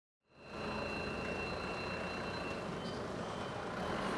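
Forklift running in a warehouse: steady mechanical noise with a high, steady warning tone over it that fades about two and a half seconds in. The sound comes in from silence a moment after the start.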